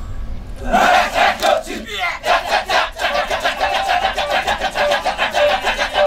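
Kecak chorus of about seventy men chanting the rapid, interlocking 'cak-cak-cak' rhythm, about five pulses a second, with a sustained sung tone over it; the chant sets in about a second in.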